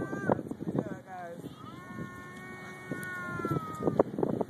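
A child's high voice: a few short vocal sounds, then one long drawn-out high call of about two seconds that drops slightly in pitch at the end.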